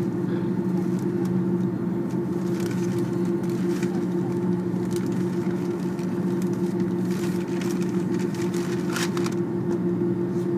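Steady cabin noise of an Airbus A330-300 taxiing, its jet engines at idle giving a constant low hum. A few faint clicks sound through it, mostly near the end.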